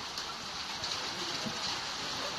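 Hail falling in a steady, even hiss.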